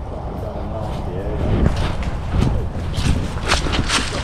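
Footsteps crunching through dry fallen leaves and twigs, a step every half second or so in the second half, over a steady low rumble.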